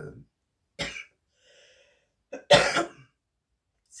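A woman coughing: a short cough about a second in, then a louder cough about two and a half seconds in.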